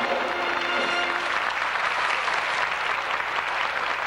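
Audience applauding. Band music with held notes plays under the clapping for about the first second, then the applause carries on alone.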